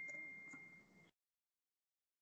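A single high, steady ringing tone, like an electronic chime, fading out about a second in.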